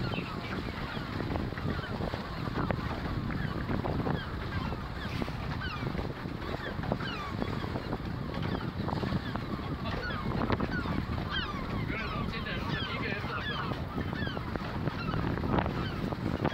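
A dense chorus of many short animal calls, quick overlapping cries, over a steady low rumble of wind and boat noise.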